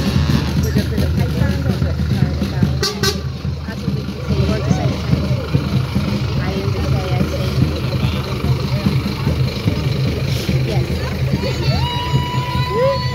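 Diesel engine of a Scania P310 flatbed lorry running as the lorry passes slowly at close range, with crowd voices over it. A held, pitched note begins just at the end.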